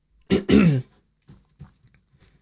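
A person clearing their throat once, short and falling in pitch, about a third of a second in, followed by a few faint clicks.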